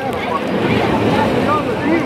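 Many voices of bathers talking and calling out at once over the wash of shallow sea water, with wind buffeting the microphone.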